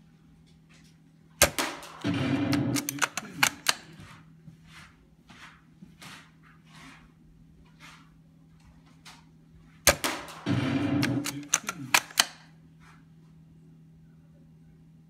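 Tokyo Marui VSR-10 G-Spec spring-powered airsoft bolt-action rifle fired twice, about eight and a half seconds apart. After each sharp shot comes about a second of loud mechanical noise from the bolt being worked to re-cock the spring, then a run of clicks as it is closed.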